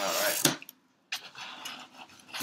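Cardboard shipping box being opened by hand: a short rasping rip at the start ending in a sharp click about half a second in, then after a brief pause softer rustling of cardboard and packing.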